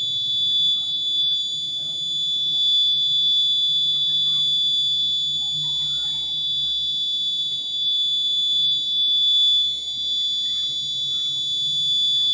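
Piezo buzzer on an embedded alarm board sounding one steady, high-pitched continuous tone: the gas alarm, set off by smoke held to the gas sensor.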